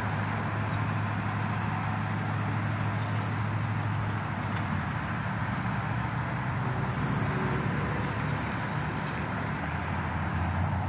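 An ambulance's engine idling steadily, a low even hum.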